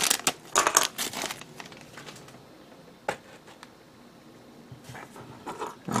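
Clear plastic parts bag crinkling in the hands, in several bursts over the first second and a half. Then it is quieter, with a single sharp click about three seconds in and more rustling near the end.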